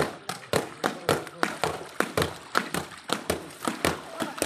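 Wet cloth being beaten by hand with a long wooden pole on a round wooden tray and with a paddle on a board: a quick, uneven run of sharp slapping thuds, about three or four a second, from more than one beater.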